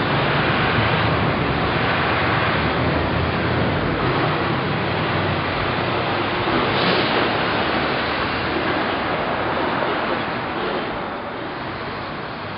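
Loud steady rush of wind on the microphone over a low vehicle rumble, easing slightly near the end.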